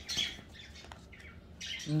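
A deck of tarot cards being handled and shuffled by hand, with soft brief card rustles and a small click. A rising "uh-huh" begins at the very end.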